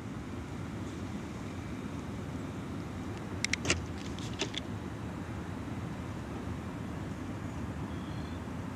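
Steady low rumble of background noise, with a few quick clicks about three and a half seconds in.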